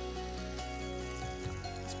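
Bacon and steak sizzling and crackling on a flat stone griddle heated by a campfire, with steady background music over it.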